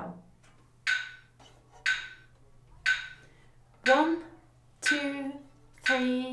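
Metronome ticking slowly, one click about every second, at a slow play-along tempo. From about four seconds in, a woman counts the beats aloud in time with the clicks.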